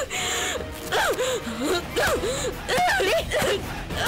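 A woman crying out without words in repeated gasping wails, each rising and falling, about two a second, in distress or rage as she beats a pillow, with a burst of rustling near the start, over background music.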